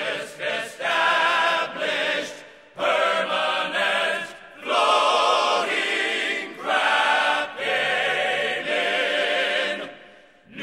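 Male ensemble singing in close harmony: held chords in phrases of one to two seconds, each broken off by a short pause before the next.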